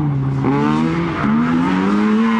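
Small rally car's engine passing on a track corner, its pitch falling as it slows, then jumping up sharply twice, about half a second and just over a second in, as it changes down a gear, before holding steady.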